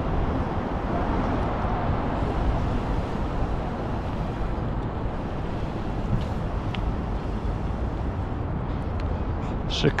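Steady wind rush and low rumble on the microphone of a bicycle-mounted camera while riding.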